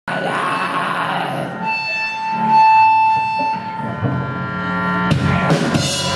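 Live rock band playing loud, with drums and bass guitar. A long high note is held through the middle, then drum and cymbal hits come in about five seconds in.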